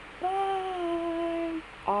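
A person's voice holding one long hummed note, its pitch sinking slightly, then a short voiced sound starting just before the end.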